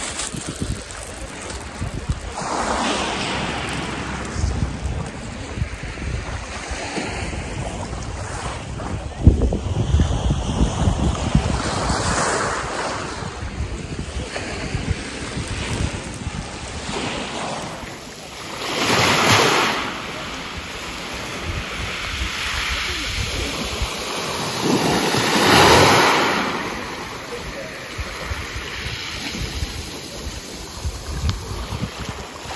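Small sea waves washing up and draining back over a pebble beach, the hiss swelling and fading every several seconds, with the biggest surges near the end. Wind rumbles on the microphone throughout.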